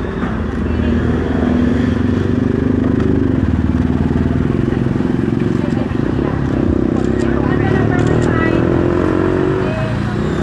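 An engine running close by, its pitch drifting up and down with a fast even pulse, under scattered voices.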